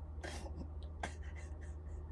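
Quiet room tone with a steady low hum and a few brief, soft scratchy noises.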